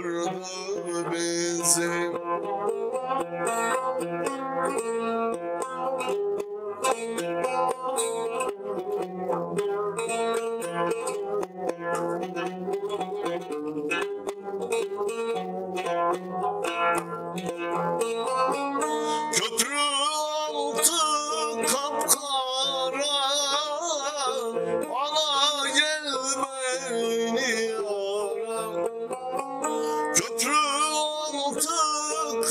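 A long-necked saz (bağlama) played by plucking, a steady run of notes; about two-thirds of the way through a man's voice joins in, singing with a wavering vibrato over the strings.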